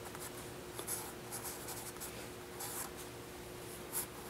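Graphite pencil sketching on drawing paper: short scratchy strokes that come and go, the sharpest one near the end.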